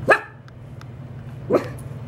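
A Maltese dog giving two short barks, the first louder and the second about a second and a half later, alert barking at someone walking outside.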